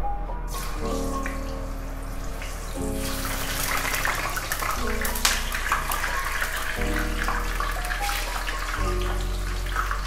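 White tofu pieces sizzling in hot oil in a wok, the frying hiss with fine crackles rising about three seconds in as the tofu goes in. Background music plays throughout.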